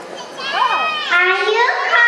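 Several young children's high voices calling out together, overlapping, their pitch sliding up and down; they grow louder about half a second in.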